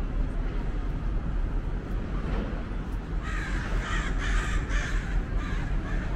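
A crow cawing, a quick series of about five or six harsh caws starting about three seconds in, over a steady low background rumble.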